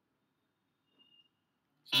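Near silence in a pause between spoken sentences, with a faint, brief high tone about a second in; a man's voice starts speaking right at the end.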